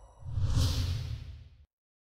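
Whoosh sound effect with a low rumble under it, swelling about a quarter second in and fading over about a second, then cutting off suddenly.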